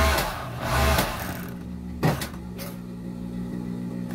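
Jontex industrial overlock (serger) machine with its motor humming steadily. A loud burst of noise comes in the first second and a half, then a sharp knock about two seconds in.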